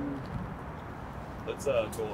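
Quiet outdoor city-street ambience, with a brief vocal sound about one and a half seconds in.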